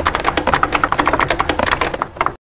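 Rapid typing on a computer keyboard: a fast, uneven run of key clicks, about a dozen a second.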